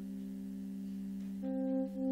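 Slow, sustained droning notes from a band's homemade recycled instruments, steady and without sharp attacks, with a louder note swelling in about a second and a half in.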